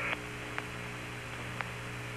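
Steady hum and hiss of the Apollo air-to-ground radio link between transmissions, with two faint clicks about a second apart. A brief band of static cuts off just after the start as the last transmission ends.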